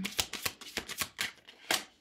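Tarot cards being handled: a card drawn from the deck and laid down on the table, a quick run of light papery clicks and slides with a louder snap near the end.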